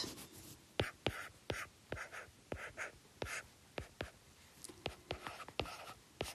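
Stylus writing on a tablet: faint, irregular light taps and short scratching strokes.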